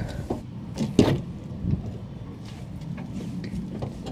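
A few light knocks and clicks from work on an SUV's door, the sharpest about a second in.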